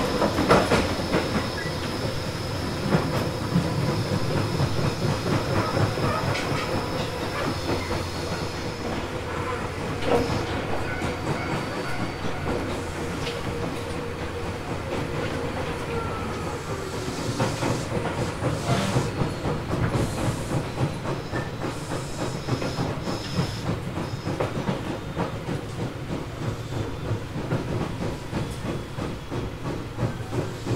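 Tobu 800-series electric train car MoHa 804-2 running along the line: a steady rumble with the clickety-clack of wheels over rail joints. A thin high whine fades out about a third of the way in.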